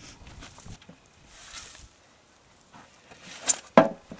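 Shovel working compost in a plastic wheelbarrow: a soft shovelful of compost being tipped out about a second and a half in, then two sharp knocks near the end as the shovel blade strikes in the barrow.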